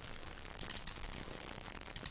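Quiet pause: faint room hiss with a couple of faint clicks.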